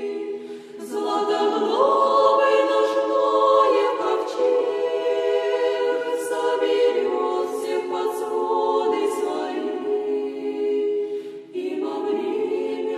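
Women's convent choir singing a cappella in sustained chords, the pitch moving in steps, with a brief break for breath just under a second in and another near the end.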